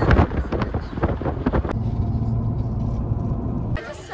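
Car cabin noise while driving: an uneven, gusty rush for about the first second and a half, then a steady low hum of engine and road noise that cuts off suddenly just before the end.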